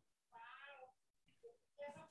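A single faint, pitched, voice-like call about half a second long, falling slightly in pitch, in an otherwise near-silent pause.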